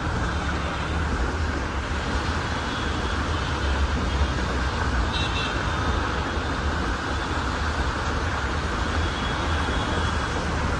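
Heavy rain and traffic on a flooded road: a steady wash of rain and tyres through water over a low rumble of bus and car engines. A short high tone sounds about five seconds in.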